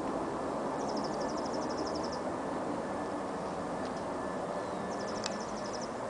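Steady outdoor background noise with a high, quick chirping trill heard twice, once for about a second and a half near the start and again near the end.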